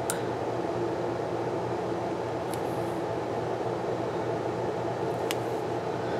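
Steady background hum in a small room, with a few faint clicks as washi tape is handled and pressed onto planner pages.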